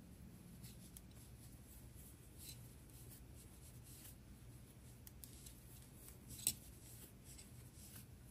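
Very quiet handling sounds of crocheting: faint rustles and light clicks of a large plastic crochet hook working thick yarn into double crochet stitches. One sharper click comes about six and a half seconds in.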